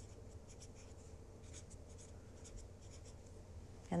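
A pen writing a label on a freezer container: a series of short, faint, high-pitched scratching strokes.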